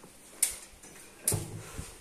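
Two sharp knocks about a second apart, the first louder, as a plastic dish-detergent bottle is put down and handled at a stainless-steel sink.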